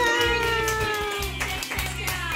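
Children cheering with long, slowly falling high-pitched calls and clapping, over background music with a steady beat.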